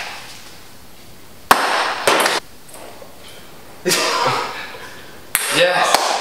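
A ping-pong ball shot at plastic cups: a sharp click about a second and a half in, then loud breathy exclamations and shouts from the players, rising again near the end.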